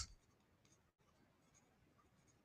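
Near silence with faint scratching of a stylus writing on a tablet screen.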